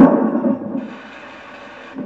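Soundtrack of an animated film clip played over a room's speakers: a sudden loud hit right at the start that fades within about half a second, then a steady, quieter hiss.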